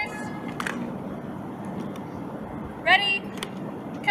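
Color guard drill practice: a cadet shouts a short drill command about three seconds in, its pitch rising. A couple of sharp knocks from the rifles and flagstaffs being moved come with the movements, over steady outdoor background noise.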